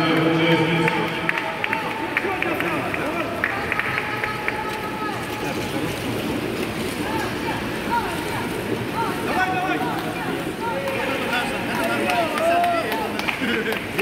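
Background noise of an indoor swimming-pool hall: several people talking at once over a steady wash of noise, mixed with the splashing of freestyle swimmers.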